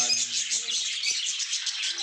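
Many budgerigars chirping and chattering at once in a continuous high twittering.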